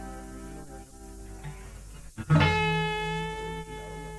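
Guitar strings ringing out and slowly fading. About two seconds in, the strings are plucked again sharply and ring on, over a steady low hum.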